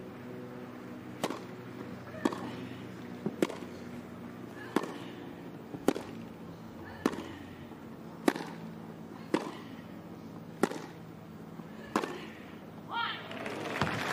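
A tennis rally: about ten sharp racket-on-ball strikes, starting with the serve and going back and forth roughly once a second. Crowd voices start to rise just before the end as the point finishes.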